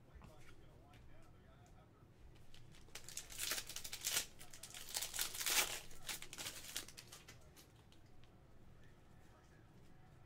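Foil wrapper of a Panini Prizm football card pack being torn open by hand, crinkling and tearing for a few seconds in the middle, loudest in two bursts.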